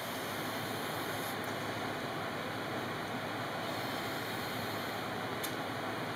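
Steady rush of breath blown through a narrow tube, inflating a balloon inside a glass bottle, held evenly for several seconds.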